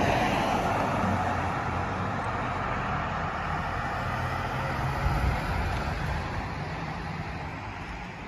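Road traffic noise from a vehicle on a near-empty city road: a steady motor rumble with tyre hiss, loudest at the start and slowly fading as it recedes.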